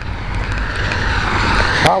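A car driving past on the wet street, the hiss of its tyres on the rain-covered road swelling steadily over about two seconds.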